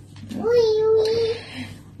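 A woman's voice drawing out one long, slightly wavering wordless sound for about a second, in the middle of an emotional talk.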